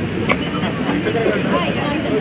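A pickaxe strikes the ground once, a sharp crack about a third of a second in, over the steady murmur of a crowd chatting.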